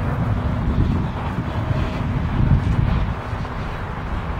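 Wind buffeting the microphone outdoors, an uneven, gusty low rumble.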